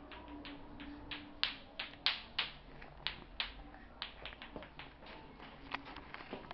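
Bate-bate clacker toy: two small plastic balls on a string knocking together in a run of sharp, uneven clicks as a toddler swings it, the loudest clacks clustered a little past the first second and around the second.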